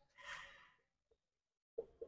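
A faint breath out, a soft swell of air lasting under a second, then near silence.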